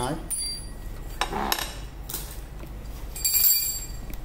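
Parts of a trimmer being handled: light knocks, then about three seconds in a bright metallic clink that rings briefly, like a steel cutting blade or tool touching another part.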